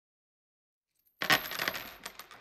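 Coins dropping onto a hard surface and clattering: a quick run of metallic clicks about a second in that dies away.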